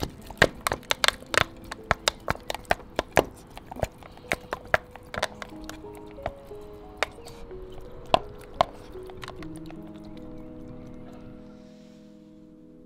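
A herring gull's beak knocking and clattering against a plastic food tub as it pecks out tuna, in quick, irregular sharp clicks that thin out after about nine seconds. Soft background music with held notes plays underneath.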